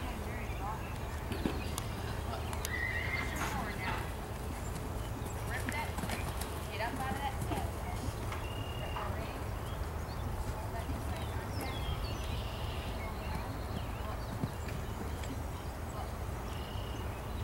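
A horse's hoofbeats cantering on a soft dirt arena, over a steady low rumble, with faint voices in the background.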